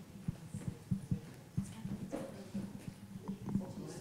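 Scattered soft knocks and bumps, several a second at irregular spacing, over a low steady hum. This is handling and movement noise picked up by the microphones between the end of a talk and the first question.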